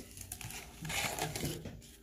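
A stack of paper baseball cards rustling and sliding against each other as they are thumbed through by hand, loudest about a second in.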